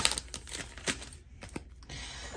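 Foil trading-card pack wrapper crinkling, with a few short sharp clicks as the stack of cards is slid out of the torn-open pack.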